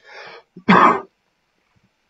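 A man clears his throat: a soft breathy sound, then one loud, short, rough cough just under a second in. He is hoarse.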